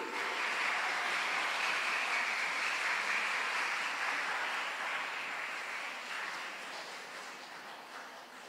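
Audience applauding, a dense even clapping that fades away over the last few seconds.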